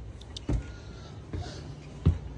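Footsteps climbing wooden stairs: two dull thumps, the first and louder about half a second in, the second under a second later.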